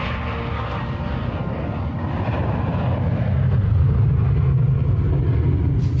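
Jet airplane passing, its engine noise swelling to a peak about four seconds in and then easing slightly.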